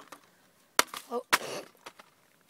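Two sharp clacks, about a second in and again half a second later, as a book is pushed through a metal library book-return slot and its flap snaps back.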